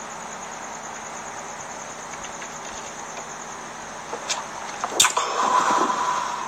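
Steady background hiss, with a faint click about four seconds in and a sharper click about a second later, then a short muffled sound near the end.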